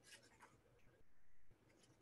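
Near silence: room tone with a few faint, soft handling noises, including one faint scratchy sound about a second in that lasts about half a second.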